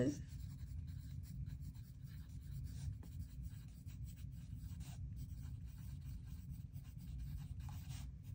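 Wooden pencil writing on a paper workbook page: faint, irregular scratching strokes, over a low steady background hum.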